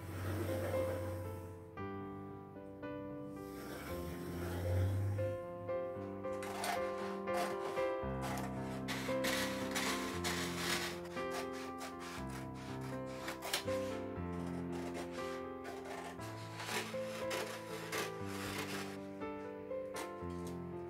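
Light background music over the rustle of a large sheet of paper and scissors cutting through it. From about a third of the way in until near the end there is a dense run of crisp snips and paper rubs.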